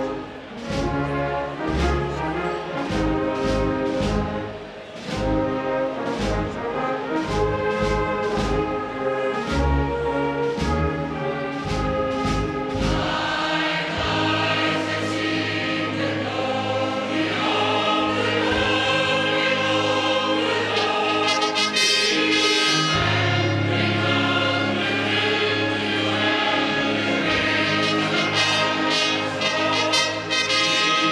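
A fanfare band and a choir performing together: brass, trumpets and trombones among them, over a steady beat at first. From about 13 seconds in the music broadens into long held chords with the choir singing.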